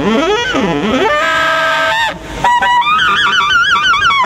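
Tenor saxophone played solo and loud: quick swooping slides down and up, a held note, a short break about two seconds in, then a higher note shaken with wide vibrato.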